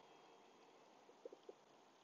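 Near silence, with three faint, brief blips a little over a second in.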